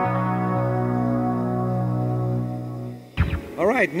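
Electric guitar through the BOSS ME-70's clean amp model with chorus: a held chord rings on and dies away about three seconds in.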